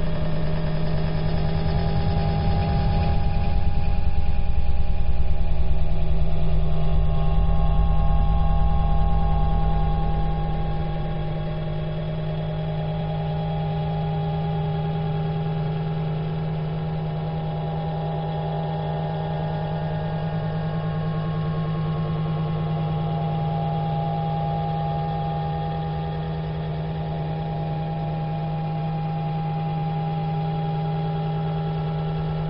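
A steady low drone built on one strong held hum, with a few fainter higher tones held over it. A deeper rumble underneath fades away about ten seconds in, and the sound is dull and band-limited.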